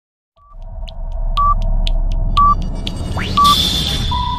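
Electronic countdown sound effect: short beeps about once a second over a steady low rumble, with a rising swoosh just before the last beep.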